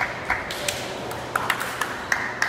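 Several short, sharp taps with a brief ringing ping, about six in two seconds at uneven spacing, echoing in a large sports hall.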